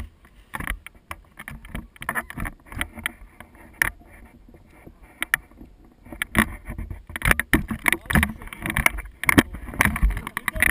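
Wind rushing over the microphone of a tandem paraglider's action camera, with irregular knocks and rattles from the harness and its buckles. The rumble and clatter grow heavier from about six seconds in as the glider comes in to land on grass.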